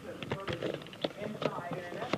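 Handling noise from a camcorder being gripped and moved: a string of short, sharp clicks and knocks.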